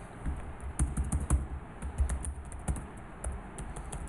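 Computer keyboard typing: an irregular run of keystrokes, including several presses of Enter, starting about a third of a second in.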